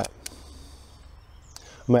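A single sharp click about a quarter second in: the Nikon D800's shutter firing for the shot. A much fainter click follows about a second and a half later.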